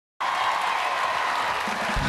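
Studio audience applauding steadily, starting abruptly just after the start; the band's first low note comes in right at the end.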